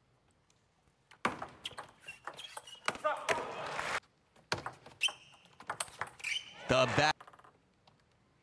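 Table tennis rally: the plastic ball knocking off rackets and bouncing on the table in a quick, irregular run of sharp clicks starting about a second in. Near the end there is a shout as the point is won.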